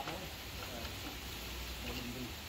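Faint, steady outdoor background noise with a low rumble and brief, indistinct voices; no distinct work sound stands out.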